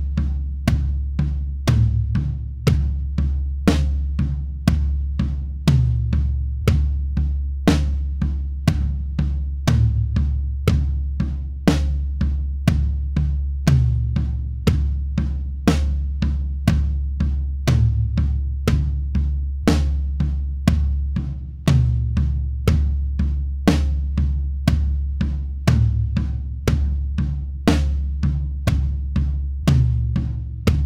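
Acoustic drum kit playing a slow beginner groove at 60 BPM, even strokes about two a second: hi-hat eighth notes with bass drum and snare. Once a bar, on beat 4, a rack tom is struck instead of the snare, alternating between two rack toms bar by bar, each tom note dropping in pitch as it rings out.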